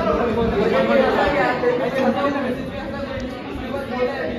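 A group of young men chattering, many voices talking over one another with no single clear speaker.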